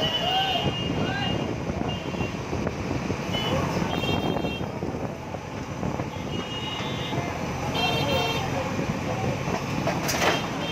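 JCB backhoe loader's diesel engine running as its arm works, under a din of voices, with several short high-pitched toots.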